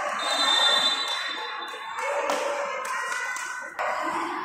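Echoing sports-hall sound at a volleyball match: a murmur of voices, a high steady whistle tone lasting about a second and a half near the start, and a few sharp knocks later on.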